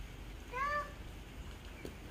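A toddler's single short, high-pitched call about half a second in, rising and then holding its note.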